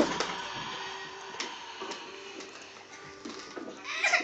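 A children's electronic toy playing a thin tune of held electronic tones, with a few sharp plastic clicks.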